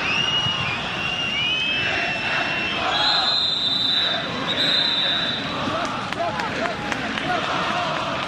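Football stadium crowd noise with shrill whistling over it: wavering whistles at first, then two steadier, higher whistle blasts a little after the middle, and scattered shouts near the end.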